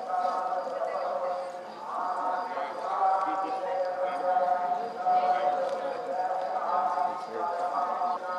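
People's voices over a steady held tone that dips briefly twice.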